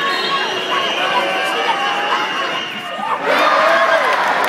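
Indoor football crowd shouting and cheering, many voices at once, swelling louder about three seconds in.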